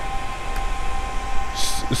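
Steady background noise with two faint steady tones running through it, then a short hiss near the end as speech begins.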